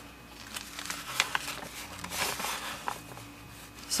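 Sheets of acrylic-painted printer paper rustling as they are handled and lifted from a stack, with a few soft clicks and a longer rustle about halfway through.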